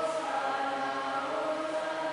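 Choir singing a hymn in long, held notes.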